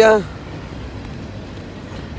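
Steady low rumble and hiss of outdoor background noise, with no distinct events in it.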